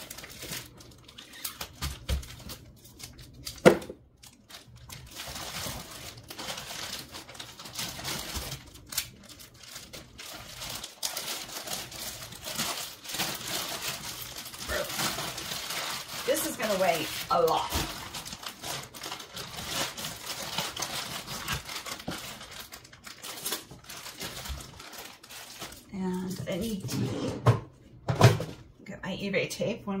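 Plastic crinkling and rustling as a clothing item in a clear plastic bag is worked and pushed into a plastic poly mailer, with a sharp click about four seconds in.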